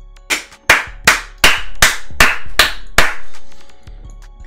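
One person clapping his hands eight times in a steady rhythm, about two and a half claps a second, with faint music underneath.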